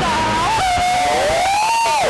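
A woman's voice singing a long, high held note that dips and then slides upward near the end.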